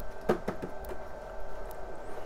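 A 286 suitcase computer running after power-on: its power supply and fan give a steady hum made of several even tones. A few faint clicks sound over it, the clearest about a third of a second in.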